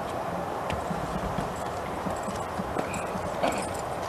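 Honour-guard soldiers' boots striking stone paving as they stamp and march in drill: a series of short, hard footfalls.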